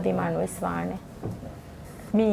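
Speech only: a voice talking for about a second, then a short pause before the talk resumes.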